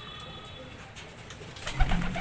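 Domestic racing pigeons cooing softly in a loft, with a single loud thump near the end.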